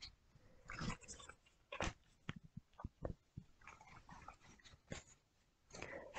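Nearly quiet, with a few faint scattered clicks and soft rustles of tarot cards being handled.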